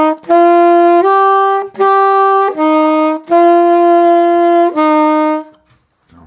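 Alto saxophone playing a slow melody of separate held notes, each a little under a second long with short breaks between them and one longer note near the end. The phrase stops about five and a half seconds in.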